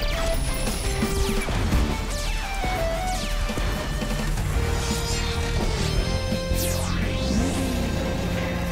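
Upbeat cartoon soundtrack music for a robot-car transformation sequence, overlaid with mechanical clanks and several sweeping whooshes that fall and later rise in pitch.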